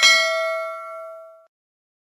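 A single bell-like chime struck once, ringing with several overtones and fading out about a second and a half in.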